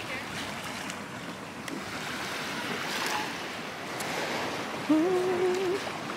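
Sea surf washing onto a sandy beach as a steady rush. About five seconds in, a person's voice sounds one short, level held note over it.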